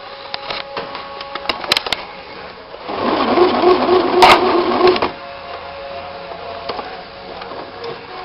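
Domestic sewing machine running a burst of stitching for about two seconds in the middle, with light clicks of fabric and machine handling before and after.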